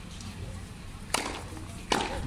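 Tennis ball being played in a practice rally on a hard court: two sharp pops about three-quarters of a second apart, the second a little louder, over a low outdoor hum.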